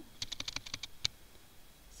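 Computer keyboard being typed on: a quick run of about ten key clicks in the first second, then stopping.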